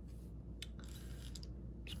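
Faint handling of a stack of baseball cards: a few soft clicks and rustles as the cards are shifted in the hand, over a low steady room hum.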